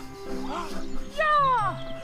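A high-pitched cry that slides down in pitch for about half a second, about a second in, over background music; a shorter rising-and-falling call comes just before it.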